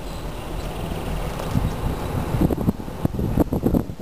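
Wind buffeting the microphone: a steady rush at first, then irregular low gusts from about a second and a half in.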